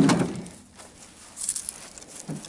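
Dry dead branches rustling and faintly crackling as they are picked up out of the grass, after a brief louder noise at the very start that dies away within half a second.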